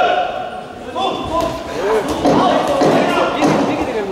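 Voices shouting during an amateur boxing bout, over dull thuds from the ring.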